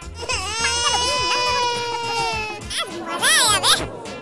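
A crying sound effect: one long, high wail held for about two and a half seconds and sagging at its end, then a couple of shorter wavering cries near the end, over background music.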